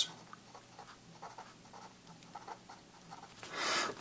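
Pen writing by hand on a paper worksheet: faint scratchy strokes, followed near the end by a short, louder hiss.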